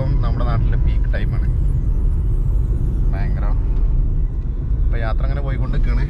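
Steady low rumble of a moving car, engine and road noise heard from inside the cabin.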